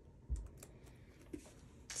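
A few faint, light taps and clicks of paper stickers and a sticker tool being handled on a planner page, the firmest a dull tap about a third of a second in.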